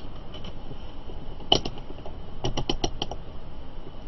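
Rotary selector dial of a digital multimeter being turned: one click, then a quick run of about six clicks through its detents. The meter is being switched from the voltage range to the current range.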